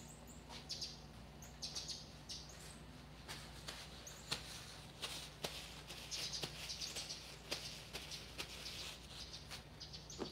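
Birds chirping, with scattered light clicks and knocks and the rustle of a paper towel being handled, over a faint steady hum.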